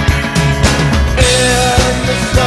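Rock music with a steady drum beat and held melody notes over it.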